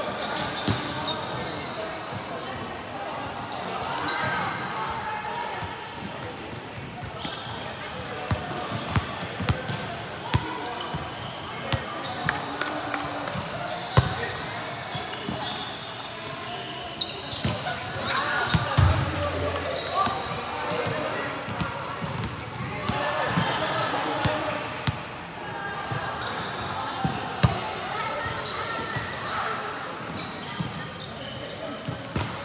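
Volleyball rally in a large sports hall: the ball is struck and lands with several sharp slaps and thuds, the loudest about halfway and near the end, amid players' shouts and calls.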